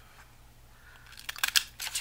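Decorative paper punch cutting the corner of a paper tag: a quick cluster of sharp clicks and paper crunches about halfway through, after a quiet first second.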